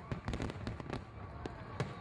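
Fireworks popping and crackling: many quick, irregular bangs and crackles close together.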